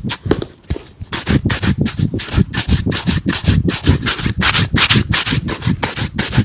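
Shoe brush buffing a black leather boot in rapid back-and-forth strokes, about four to five a second, with a brief lull just under a second in.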